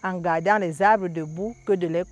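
A person speaking French, with a steady high-pitched insect trill, such as a cricket's, going on behind the voice.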